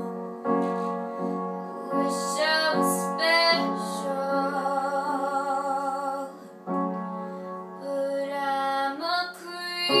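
Keyboard music: held, sustained chords with a melody line that slides upward in pitch a few times.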